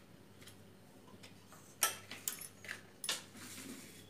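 A few light clinks and taps of steel kitchen bowls and utensils being handled on a counter, the sharpest a little under two seconds in and another just after three seconds.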